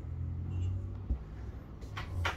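Steady low rumble of road traffic passing nearby.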